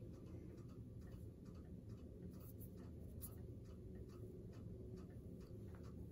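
Near silence with faint, light ticks at an uneven pace, a few a second, over a low room hum.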